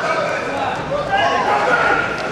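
Men's voices talking, several overlapping at once, over the background noise of a large sports hall.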